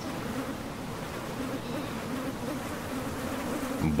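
A swarm of biting insects buzzing steadily: a low drone whose pitch wavers slightly.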